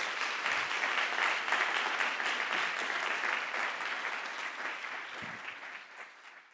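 Audience applauding: a dense patter of many hands clapping that is fullest in the first couple of seconds, then slowly dies away.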